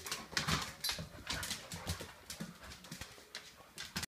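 Dogs play-fighting: scuffling and short dog noises in quick, irregular bursts that thin out toward the end.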